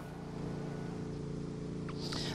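A steady low machine hum made of several even tones over a faint rumble, heard on the open live outdoor feed.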